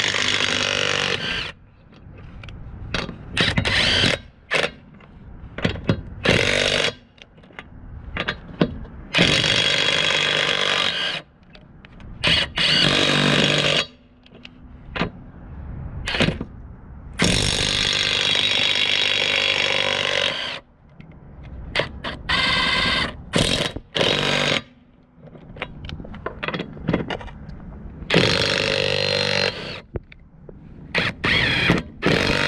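Tenwa half-inch-drive cordless brushless impact wrench hammering on a car wheel's lug nuts in repeated bursts. The longest bursts last two to three seconds, with short blips of the trigger between them.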